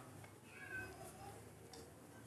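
Faint rustle of a paper slip being unfolded, with a brief faint high-pitched cry about half a second in.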